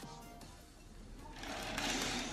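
Sheer window curtain being slid open along its track, a swishing rush that builds over about a second near the end.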